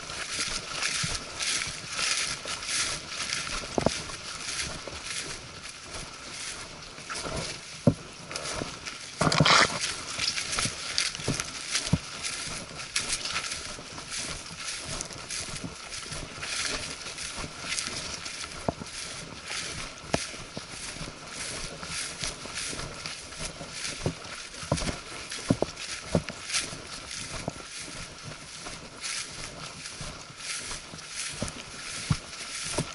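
Footsteps through ferns and low undergrowth on an overgrown path, with leaves and brush rustling against the walker and short crunches and clicks at each step. About nine seconds in there is a louder burst of rustling as branches brush close past the camera.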